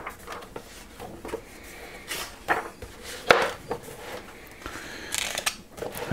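Paper pages of a large bound book being turned and smoothed flat by hand: a few short rustles and soft knocks of the pages and cover.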